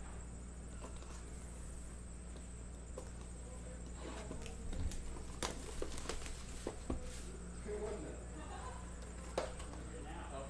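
Clear plastic shrink wrap being torn and peeled off a cardboard trading-card box: faint crinkling with a few sharp crackles in the second half, over a low steady hum.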